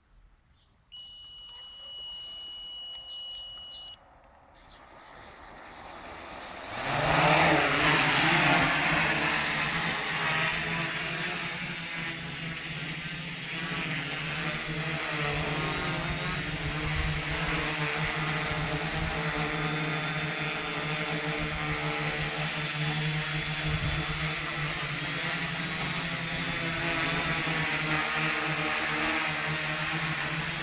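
Homemade quadcopter: a high electronic tone sounds for about three seconds. Its four motors then spin up, rising sharply to takeoff power about seven seconds in, and settle into a steady propeller buzz as it hovers low.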